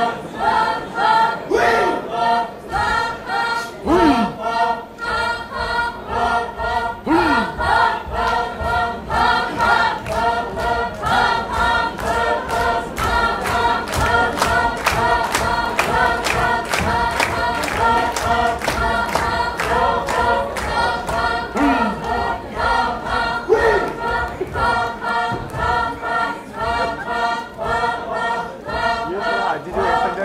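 Group of Naga dancers singing a chant-like folk song together, with a few sliding calls and a sharp regular beat a few strokes a second that becomes clear about a third of the way in.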